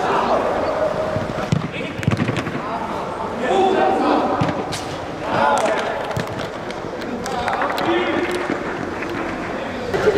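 Football players' voices calling out across a large indoor hall, with a few dull thuds of the ball being kicked on artificial turf.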